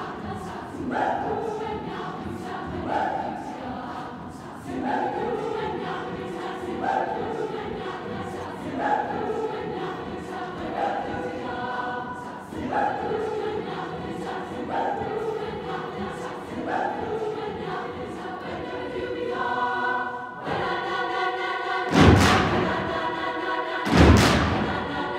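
High school choir singing a short rhythmic figure that repeats about every two seconds. Near the end come two loud thumps about two seconds apart, each ringing on in the hall.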